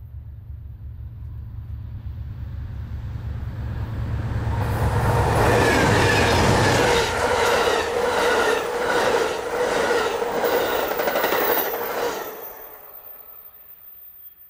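Amtrak Southwest Chief passing at speed: the diesel locomotives' low rumble builds and passes about halfway through. Then the passenger cars' wheels clatter past in a quick, even clickety-clack, and the sound fades away near the end.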